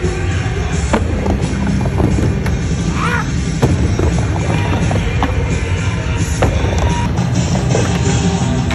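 Skateboard wheels rolling and rumbling across a vert ramp, with several sharp clacks of the board, under loud music.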